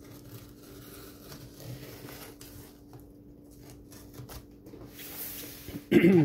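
Utility knife slicing through packing tape along the edges of a cardboard box, with scratchy scraping and the rustle of the cardboard being handled; the cutting gets louder near the end.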